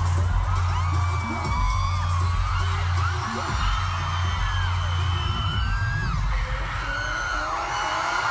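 Live K-pop girl-group music played through an arena sound system, with heavy bass, heard from within the audience, while many fans scream and whoop over it.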